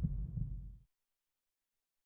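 The low rumbling tail of a booming sound effect dies away with a couple of low thumps, then cuts off to dead silence less than a second in.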